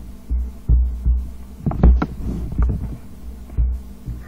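Irregular low thumps, about two a second, with a cluster of sharper clicks in the middle.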